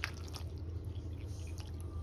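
Steady low hum with a sharp click right at the start and a few faint clicks and soft rustles, with a faint thin tone near the end.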